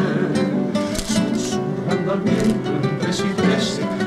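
Carnival comparsa music: Spanish guitars strumming, with the group's voices in the mix.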